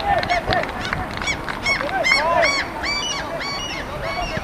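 A group of birds calling: short rise-and-fall calls, about three a second, overlapping at more than one pitch.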